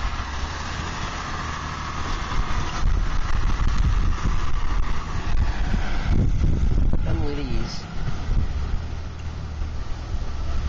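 Land Rover Discovery driving out of a ditch and up a grassy slope, its engine running under a steady low rumble that grows louder for several seconds in the middle, mixed with wind buffeting the microphone.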